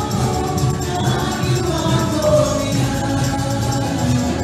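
Live worship music: several voices singing together in a gospel-style song over band accompaniment with a steady beat.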